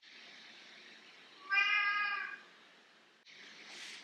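A domestic cat meowing once, a single pitched call just under a second long, about one and a half seconds in.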